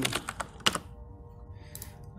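Computer keyboard keys clicking as a word is typed: a handful of quick keystrokes in the first second, then quiet.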